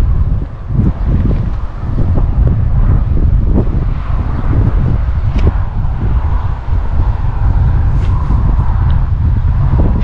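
Wind buffeting the camera's microphone: a loud, steady low rumble with constant flutter.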